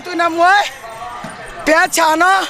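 A woman speaking loudly into a microphone, in two spells with a short pause in the middle.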